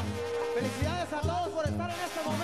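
Banda sinaloense brass band playing an instrumental passage live. Tuba bass notes pulse steadily about two and a half times a second under quick, wavering wind-instrument runs and trills.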